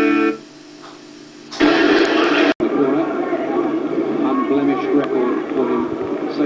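Television broadcast audio: an advert's music stops just after the start, there is a second of low sound, then voices and music come back, broken by a split-second dropout about two and a half seconds in.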